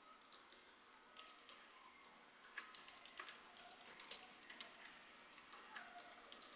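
Faint typing on a computer keyboard: a run of quick, irregular keystroke clicks, sparse at first and coming thicker about two and a half seconds in.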